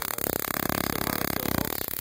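High-voltage arc from a Cockcroft-Walton multiplier taken from a dental X-ray head, fed by a plasma-globe flyback driver: a dense, rapid crackle that swells a moment in and stops just before the end.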